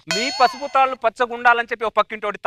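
A sudden metallic ding-and-clang sound effect that rings for about half a second, dubbed in as the comic stage slap lands, followed by quick talking.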